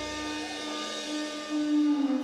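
A live rock band's final held note ringing out at the end of a song: a steady sustained tone with its overtones. The bass drops away about half a second in, and the note swells near the end.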